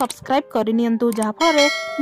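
A bright bell chime starts about one and a half seconds in and rings on steadily: the notification-bell sound effect of an animated subscribe button.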